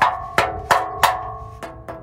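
A thick custom steel shield plate bolted over a truck's catalytic converters being knocked by hand about six times, each knock ringing with a clear metallic tone. The four strongest knocks come in the first second; two lighter ones follow near the end.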